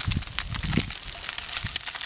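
A plastic bag of dry spice mix crinkling and rustling as it is shaken over fish fillets in a pan. Underneath is a steady crackling hiss from the oiled pan over the campfire.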